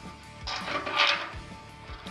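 Background music, with a brief scraping noise about a second in as the metal probe stem of a dial thermometer is slid into a drilled hole in the steel wall of a waste-oil heater.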